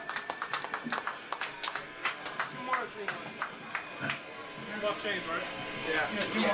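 Scattered hand clapping from a small audience, a few dozen sharp claps, thinning out after about three seconds, with voices talking over it in the second half.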